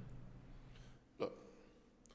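Quiet room tone broken once, about a second in, by a man saying a single short, clipped word.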